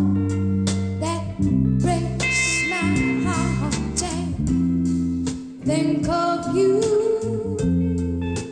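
A live rock band playing a slow song: guitar and bass guitar, with a woman singing long wavering notes.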